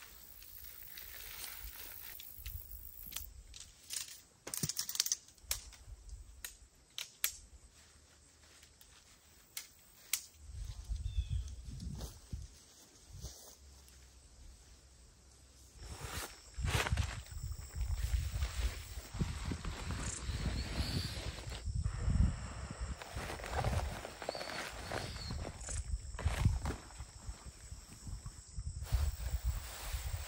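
Camping gear being set up in grass: rustling and crinkling of tarp and tent fabric, scattered clicks and knocks, and footsteps. The handling gets busier and louder, with low thumps, from about 16 s on.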